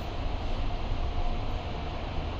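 Steady room background noise: a low rumble under an even hiss.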